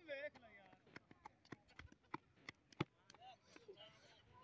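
Near silence: faint distant voices in the first moment, then a scatter of faint, irregular clicks.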